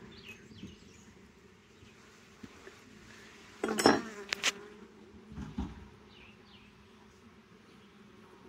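Honeybees buzzing over an open nuc box, a steady low hum. A few sharp knocks and scrapes break through as the wooden frames are pried and worked loose with a hive tool, the loudest just under four seconds in.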